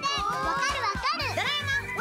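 Several children's voices, high and overlapping, over background music.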